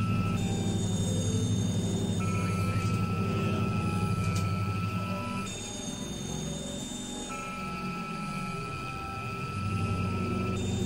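Experimental electronic drone music from synthesizers: a dense low drone under steady high held tones that swap between two pitches every few seconds. About halfway through the low drone thins out, and it swells back near the end.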